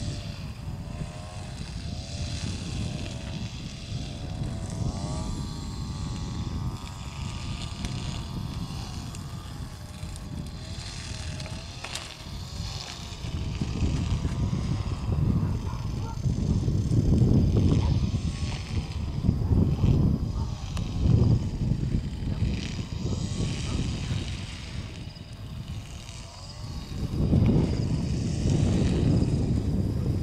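Gusts of wind rumbling on the microphone, strongest in the second half. Under them runs a faint, wavering drone like a distant engine.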